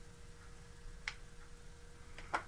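Quiet room tone: a steady low hum with a faint constant tone, broken by one faint click about a second in.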